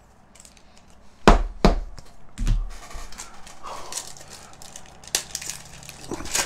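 A few knocks and a thump about a second in, then the crinkle and crackle of a foil trading-card pack being handled and opened.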